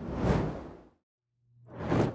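Two whoosh sound effects for an animated logo wipe transition: the first swells and fades out about a second in, and after a short silence a second whoosh rises toward the end.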